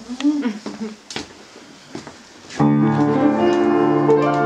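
An upright piano starts playing about two and a half seconds in, a loud held chord opening a song accompaniment. Before it come a few brief voice sounds and a single knock.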